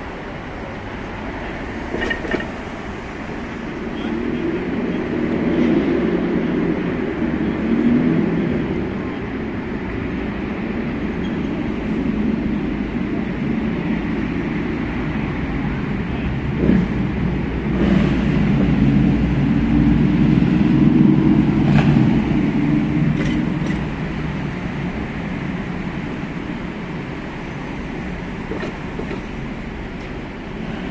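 City street traffic, cars driving past close by. The rumble swells twice as vehicles go by, with a few brief sharp clicks along the way.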